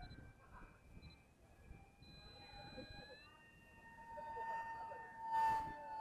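Electric motor and propeller of a depron SU-35 RC parkjet whining in flight: a faint thin tone that steps up in pitch about three seconds in and grows louder toward the end as the motor is throttled up for a loop. A short rush of noise comes near the end.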